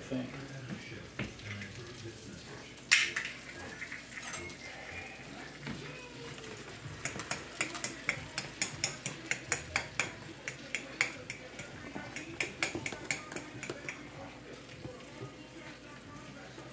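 Cookware clatter at a stove: a sharp clink about three seconds in, then a run of quick, irregular clicks and clinks through the second half, over faint frying in the pan.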